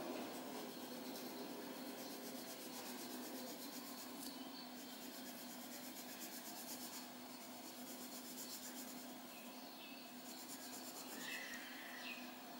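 Faint scratching of a coloured pencil on paper in quick back-and-forth shading strokes.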